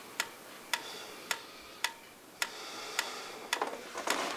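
A pyramid-style mechanical metronome ticking at a steady tempo, a little under two ticks a second.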